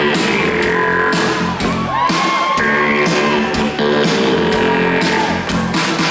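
Live pop-rock band playing through the PA, electric guitars and keyboards over a steady drum beat.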